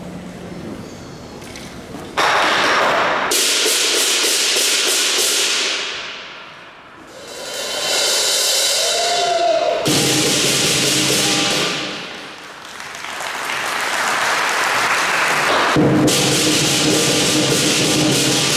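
Southern lion dance percussion: the large lion drum with clashing cymbals and gong, played in loud crashing swells that die down twice and build up again.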